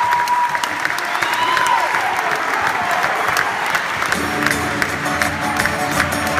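Concert audience applauding and cheering in a large hall, with a held cheer in the first couple of seconds. About four seconds in, the band starts playing steady sustained chords over the clapping.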